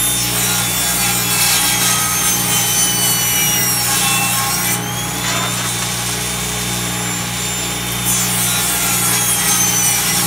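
Table saw running and crosscutting small maple blocks into bowl segments over a steady motor hum. The blade's whine drops in pitch as the cut loads it, first for the opening few seconds and again near the end, and climbs back in between.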